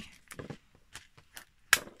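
Faint handling rustles and small clicks of paper and tape, then a single sharp clack about three-quarters of the way through as a craft tool is set down on a plastic cutting mat.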